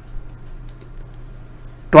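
A few faint computer keyboard clicks over a low steady hum.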